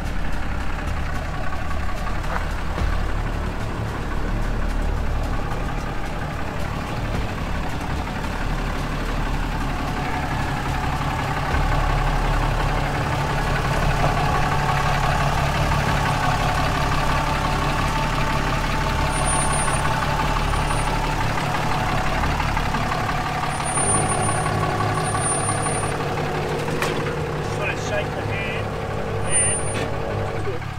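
Ram 2500 pickup's engine running at low revs as the truck crawls down bare rock, its note steadying into a more even drone about three-quarters of the way through.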